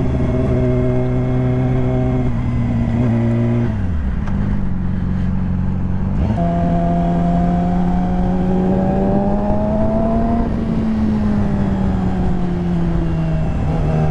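Inline-four engine of a 2017 Yamaha R6 sport bike running at road speed, heard from the rider's position. Its note holds steady, drops about four seconds in, jumps back up about two seconds later, climbs slowly under throttle, then eases gradually back down.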